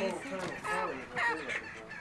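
A flock of backyard chickens clucking: a quick series of short calls, one after another.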